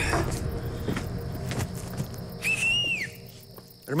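Background music fading out, then about two and a half seconds in one short whistle from a person, holding a high pitch and then dropping, a call to get someone's attention.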